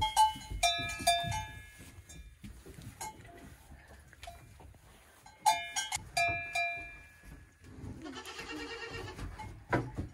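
A young goat bleating once, a long wavering call, near the end. Earlier, a metal bell clanks in a few short bursts that ring on.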